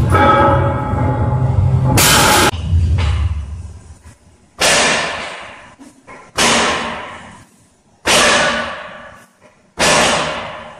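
Background music, cut off by a loud bang about two seconds in, then four sharp metallic hits from gym weights, each about 1.7 s apart and ringing out as it fades.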